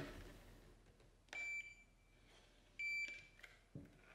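Two short, high electronic beeps from a BENTSAI HH6105B2 handheld inkjet printer, about a second and a half apart, followed by a light knock near the end.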